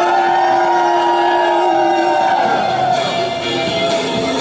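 A woman singing into a handheld microphone over a pop backing track, sliding up into one long held note that ends about two and a half seconds in, after which the backing track plays on.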